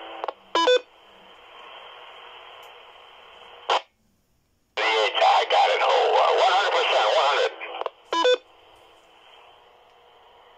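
Handheld FM transceivers receiving a 2-meter amateur repeater: a short beep, a few seconds of hiss from the open carrier that ends in a squelch-tail burst and drops to silence, then a station's voice for about three seconds, another short beep and more carrier hiss.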